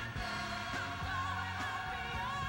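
Gospel song playing: a singing voice with wide vibrato over a bass line and a steady drum beat.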